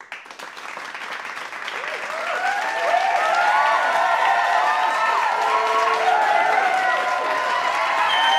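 A large crowd cheering and applauding: many voices whooping over steady clapping. It swells over the first few seconds, then holds loud.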